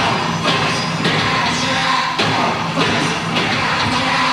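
Live electro-industrial band playing loud: a heavy, steady beat about twice a second under dense synthesizer noise, with a singer's vocal into the microphone, in a rough audience recording.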